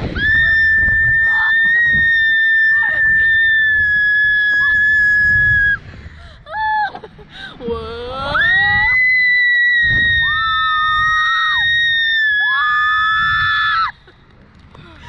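Two girls screaming in fright on a launched reverse-bungee thrill ride. One long, high, held scream lasts about six seconds, then a brief squeal, then a rising scream that goes into another long held one. A second, lower scream joins near the end.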